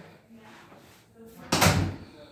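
A door between the garage and the house closing with a thud about one and a half seconds in.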